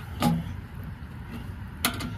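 A motorhome's water heater access door shutting with a sharp latch click near the end, after a softer knock just after the start, over a steady low rumble.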